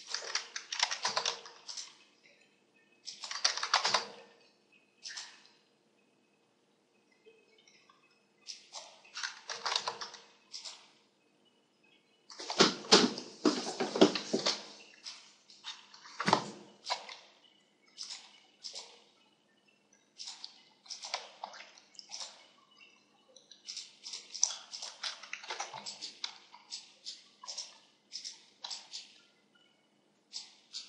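Computer mouse and keyboard clicking in irregular clusters of quick taps, with short pauses between bursts; the busiest stretch comes just before the middle.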